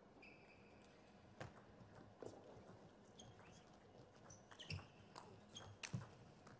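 A table tennis ball clicking off rackets and the table during a doubles rally: a string of sharp, irregular clicks. Short high squeaks of players' shoes on the court floor come between them.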